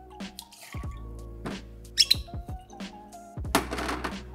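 Background music with a few light clinks of a steel jigger and glass bottle against a steel cocktail shaker tin as whisky is poured in. The sharpest clink comes about two seconds in, and a short rustle or knock comes near the end.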